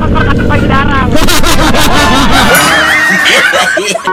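Men laughing and talking loudly over a running motorcycle engine; about two and a half seconds in the engine sound drops out and the laughter carries on alone.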